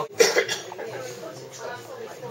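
A person coughs once, sharply, about a quarter second in, over low background chatter.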